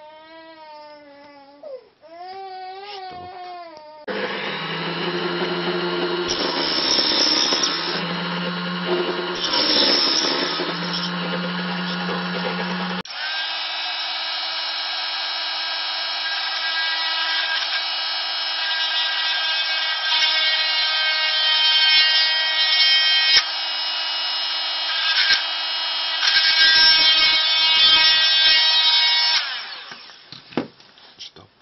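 Handheld mini drill running with a steady whine as a small bit drills into a pine wood stick. It starts about four seconds in, changes abruptly to a thinner, higher whine about thirteen seconds in, and stops just before the end.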